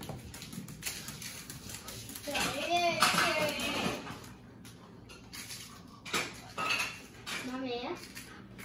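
Cutlery and dishes clinking and scraping in short, irregular clicks, with a brief high voice about three seconds in and short bits of voice again near the end.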